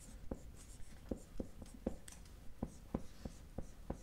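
Marker writing on a whiteboard: faint, irregular short taps and squeaks as the letters are stroked out.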